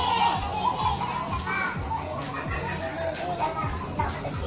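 Several voices talking and calling out over background music.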